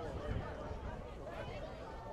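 Indistinct chatter of several voices, with no clear words, over a steady low background rumble.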